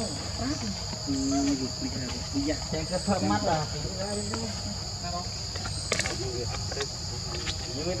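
Steady, high-pitched insect chorus of crickets or cicadas droning without a break, with a man's voice speaking Thai over it a few times and a sharp click about six seconds in.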